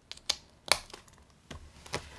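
Handling clicks and taps from a clear plastic ring binder with metal rings being closed and set into a row of binders. One sharp click comes a little under a second in, among several lighter taps.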